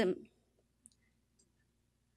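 The end of a woman's spoken word at the start, then a pause of near silence broken by one faint, short click a little under a second in.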